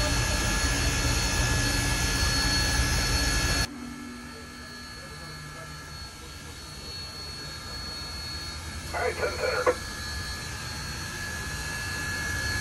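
Steady roar and hiss of the Union Pacific Big Boy 4014 steam locomotive heard inside its cab, cutting off suddenly about four seconds in, then a quieter steady hiss that slowly grows.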